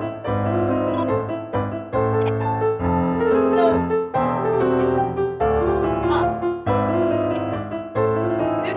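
Piano playing a waltz as ballet-class accompaniment, with steady chords and a melody in three-time.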